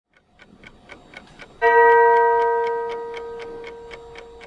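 Clock ticking about four times a second. About one and a half seconds in, a single bell chime strikes and rings on, slowly fading while the ticking continues.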